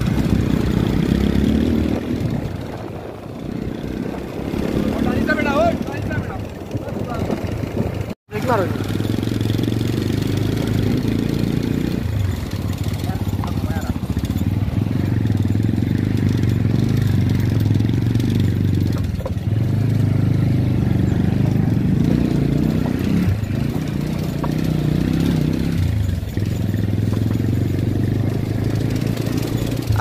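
Motorcycle engine running while riding along a rough dirt road, its note easing off and picking up again several times as the throttle is worked. The sound cuts out for a split second about eight seconds in.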